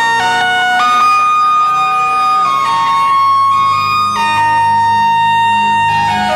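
Live electronic music: a reedy synthesizer lead plays a slow melody of held notes that step from pitch to pitch. A low bass tone joins about halfway through.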